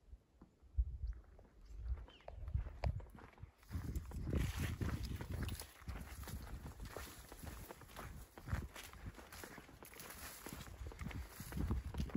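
A hiker's footsteps on a dirt mountain trail: a run of low thuds and crunching steps that grows denser and louder about four seconds in.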